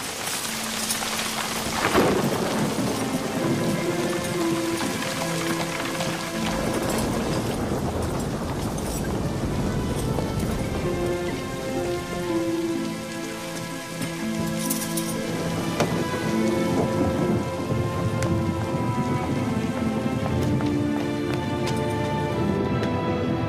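Steady heavy rain with a loud thunderclap about two seconds in, under background music of long held notes.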